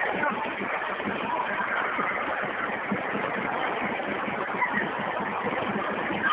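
Steady hubbub of a busy public ice rink: many distant voices mixed with the scrape of skate blades on the ice.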